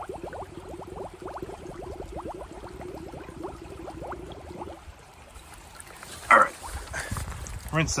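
Plastic bottle held under creek water and filling, air escaping from its neck in a fast run of gurgling glugs, each rising in pitch, that stop about five seconds in as the bottle fills.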